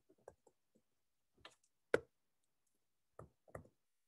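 Faint, scattered taps of a stylus on a tablet screen while handwriting: about six short ticks at uneven intervals, the loudest about two seconds in.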